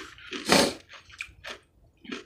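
A plastic fork scooping coleslaw from a small paper cup: a short scraping rush about half a second in, then a few light clicks.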